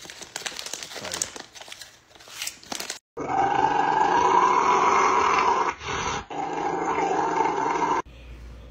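For about the first three seconds, a snack bag crinkling and crunching. Then a Rottweiler lets out a long, loud growling howl of protest while its paw is scrubbed in a cup-style paw washer, breaking off briefly about six seconds in and carrying on to the end.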